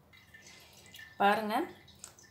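A voice says one short word, 'Now', about a second in. Before it there are only a few faint soft clicks.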